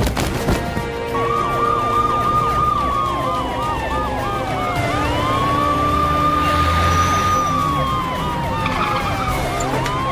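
Police vehicle sirens: a slow wail that rises, holds and slides down twice, overlapping a fast repeating yelp, starting about a second in.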